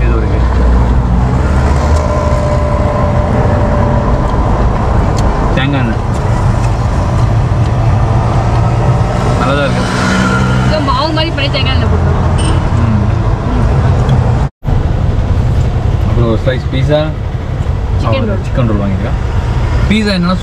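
Steady low rumble of an idling auto-rickshaw engine mixed with street traffic, with some low talk in between. The sound cuts out completely for an instant about two-thirds of the way through.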